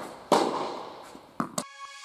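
Tennis ball hits in an indoor hall: a loud sharp pop with a long echoing tail shortly after the start, then a shorter hit about 1.4 s in. Near the end the court sound cuts off and electronic transition music with steady held tones begins.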